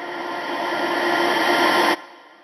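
Rising whoosh sound effect: a noise swell with a steady low tone in it, growing steadily louder and cutting off suddenly just before the end.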